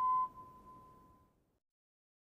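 Cartoon steam engine whistle blowing one steady held note that fades out about a second and a half in.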